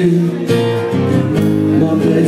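Live band music between sung lines: a steel-string acoustic guitar strummed over electric bass, the chords changing about half a second in and again near the end.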